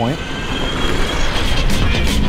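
Electric motorized desk vehicle driving along pavement: a steady rush of tyre and drivetrain noise with a faint high whine.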